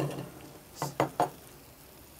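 Wooden spatula knocking against a nonstick frying pan three quick times, about a second in, over faint frying of tomato paste and onions in oil.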